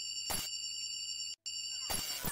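A high, steady electronic tone with overtones, like a beep or alarm sound, in an electronic pop track. It breaks off into silence for a moment about a second and a half in.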